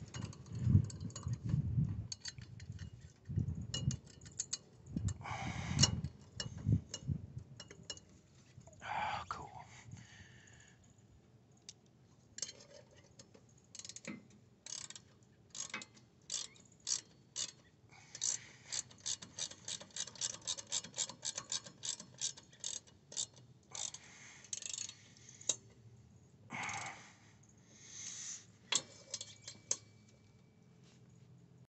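Socket ratchet wrench clicking in runs as the bolts holding a go-kart's rear-axle sprocket to its hub are tightened, with knocks and clinks of the metal parts being handled.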